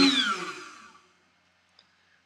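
X-Carve CNC router spindle winding down after being switched off: its steady whine falls in pitch and fades out within about the first second, leaving near silence.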